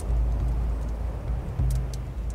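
A layered nature-sound bed: a deep, steady rumble with a wash of noise like surf or an erupting volcano, and a few faint crackles of a wood fire near the end.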